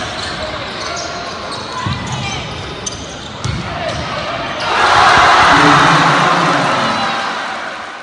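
Basketball play on an indoor court: the ball bouncing and sneakers squeaking, with players' voices. About halfway through, spectators break into loud cheering as a player scores at the basket, and the cheer fades toward the end.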